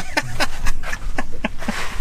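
A man's short laugh, then a few irregular knocks and clicks of a freshly caught speckled trout being handled on the boat, with a brief rush of noise near the end.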